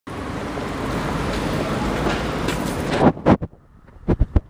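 A steady rush of noise, then two sharp knocks a quarter-second apart about three seconds in from the phone being handled.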